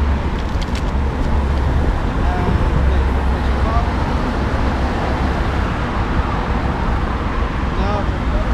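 Street traffic noise: a steady low rumble of road traffic, with a few faint voices of people nearby.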